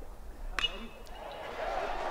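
A metal baseball bat hitting a pitched ball: one sharp, ringing ping about half a second in, the contact for a ground-ball base hit up the middle.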